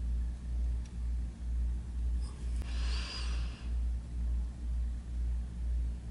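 A steady low hum that throbs about twice a second, with a faint, brief scratch of a broad felt marker tip brushing over the fly about two and a half seconds in.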